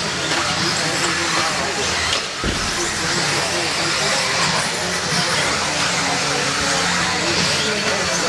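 Electric 1/10-scale RC off-road buggies racing on an indoor dirt track, their motors and tyres making a steady, even noise that mixes with the hall's voices.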